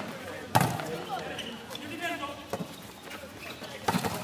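A volleyball being struck by hands during a rally: a sharp smack about half a second in, a softer hit around the middle and another near the end, as a player at the net jumps to spike or block. Players' voices call out between the hits.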